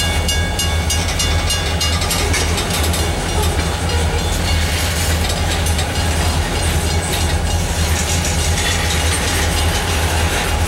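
Freight train of tank cars and boxcars rolling past at steady speed: a continuous low rumble with steel wheels clicking over the rail joints.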